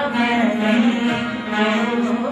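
A boy singing a Carnatic song with a steady, chant-like line, accompanying himself on the veena, with its plucked strings under the voice.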